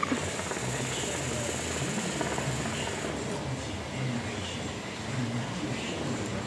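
Water bubbling in the base of a Khalil Mamoon hookah as a long draw is pulled through the hose, a low, irregular gurgle for the first few seconds that then eases off.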